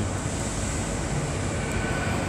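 Container freight train rolling past at close range: a steady noise of the wagon wheels running on the rails.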